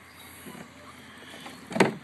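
A low, quiet stretch, then one short, sharp impact near the end.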